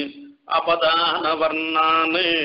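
A man reciting a Sanskrit verse in a chanting, sing-song voice, breaking off briefly about half a second in, then resuming.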